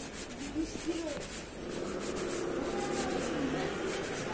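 A motor scooter running as it rides along a cobbled lane toward the listener, over a continuous rubbing, scraping street noise.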